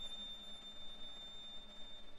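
Solo violin holding a single soft, very high sustained note that fades out near the end.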